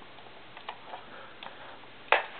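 A few faint, light clicks and taps from plastic toy parts being handled: a plastic shape-sorter toy truck and its blocks, with about four small ticks spread over two seconds.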